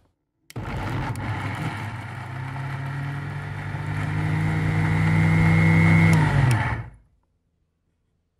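Electric mixer grinder (mixie) switched on about half a second in, running steadily and growing louder as it grinds. It is then switched off and spins down with a falling pitch near the end.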